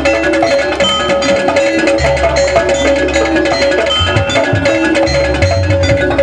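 Javanese jaranan gamelan music: drums and tuned mallet percussion playing a steady, busy rhythm over one held tone.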